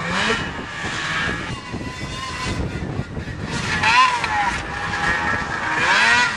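Snowmobile engine running some way off, with a few brief, indistinct voices over it.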